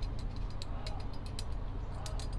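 Small screwdriver tip ticking against a thin photo-etched metal sheet of scale-model license plates: a run of light, irregular clicks, over a steady low hum.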